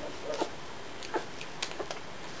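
Nine-day-old German shepherd puppies nursing, giving a few short squeaks and grunts, with small clicks in between.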